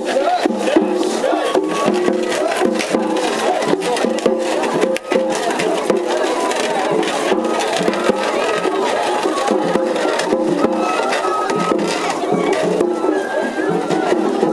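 Japanese festival hayashi music from a float: taiko drums struck again and again, with pitched melody lines held over the drumming.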